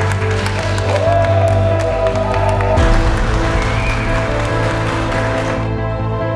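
A small crowd applauding over steady background music; the clapping cuts off suddenly near the end.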